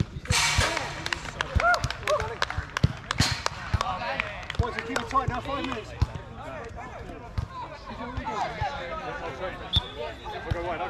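A football being kicked and bouncing on artificial turf in a five-a-side game: short, sharp thuds every second or so. Players shout and call to each other between the kicks.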